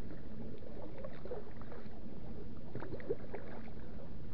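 Lake water washing against a kayak's hull as it moves, a steady low wash scattered with small drips and splashes.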